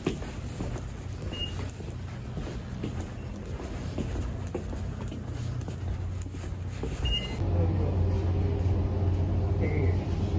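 Footsteps on a hard floor, about two a second, over a low steady hum. The steps stop about seven seconds in, and a louder steady low hum carries on.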